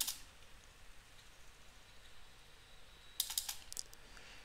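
A quick burst of computer keyboard keystrokes about three seconds in, after a stretch of faint room noise.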